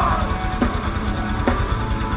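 Live heavy rock band playing loud, driven by a drum kit with bass drum and an electric guitar, with a stretch of no vocals.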